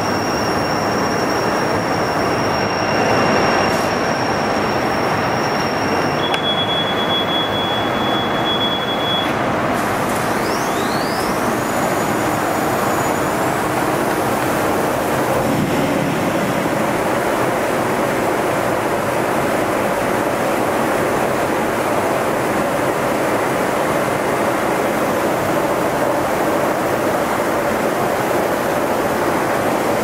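Gallus Labelfire hybrid UV inkjet label press running a print job: a steady, loud mechanical noise. A high whine in the first few seconds drops to a lower whine, and rising whines follow about eleven seconds in.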